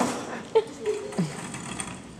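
Wire shopping cart rolling across a stage floor, its basket and casters rattling, with a sharp clack about half a second in and a few brief squeaks.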